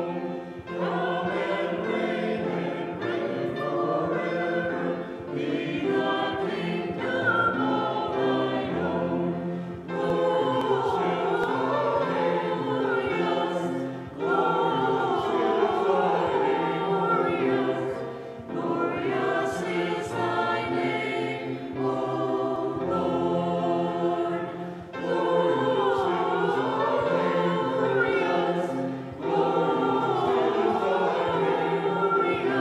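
A mixed church choir of men's and women's voices singing an anthem in phrases, with short breaks between phrases.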